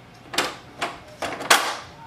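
Plastic clicks and knocks from the raised top covers of a Pantum M6507NW laser printer being handled: four short clicks over about a second and a half, the last the loudest.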